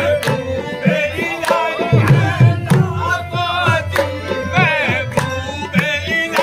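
Live qawwali: voices singing a bending melodic line over a sustained harmonium, with steady rhythmic hand clapping and hand-drum beats.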